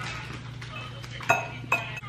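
Metal forks clinking twice against a dish while eating, the two clinks about half a second apart in the second half, over a low steady hum.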